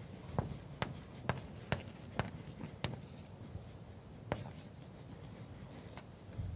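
Chalk writing on a blackboard: irregular sharp taps, about seven, as the chalk strikes the board, with soft scraping between them.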